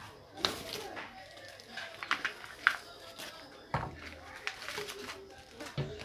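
Plastic bag and wrapping being handled and pulled off a boxed rifle scope: irregular crinkles, rustles and small knocks.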